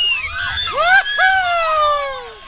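Several people whooping and shrieking at once, their voices rising and then sliding down in long overlapping calls.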